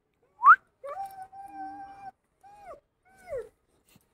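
German shepherd whining: a sharp rising yelp about half a second in, then a long steady whine and two short falling whines.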